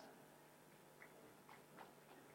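Near silence: room tone with a few faint clicks, about a second in and again near the end.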